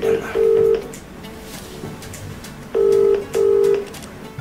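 Phone ringback tone over a smartphone's speaker: a low double ring, two short beeps with a brief gap, repeating after a pause of about two seconds. This is the Indian-style ringback, so the call is ringing at the other end and not yet answered.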